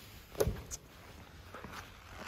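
A short, sharp knock about half a second in, then a fainter click, and a faint tick near the end: light handling knocks around the car's body.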